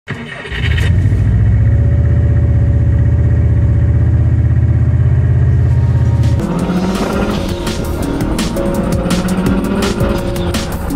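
A car engine running with a steady deep drone for about six seconds, then music with a driving drum beat takes over.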